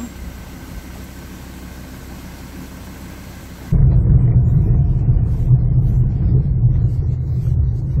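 A steady hiss, then about four seconds in a loud, low rumble of a 4x4 pickup truck driving on a rough dirt road, heard from inside the cab: engine drone mixed with tyre and road noise.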